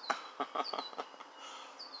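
Short high-pitched chirps that fall in pitch, repeating about once a second, with a few faint clicks in the first second.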